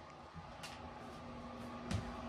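Quiet indoor room tone with a few faint clicks and a soft knock near the end, over a faint steady hum.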